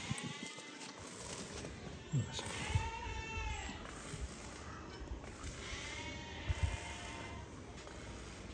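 Sardi sheep bleating twice, each a long wavering bleat of about a second, the first a little after two seconds in and the second about three-quarters of the way through, with a few dull thumps.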